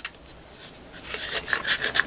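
Plastic lid of a travel coffee mug being twisted and rubbed by hand: a quick run of short scraping strokes starting about a second in.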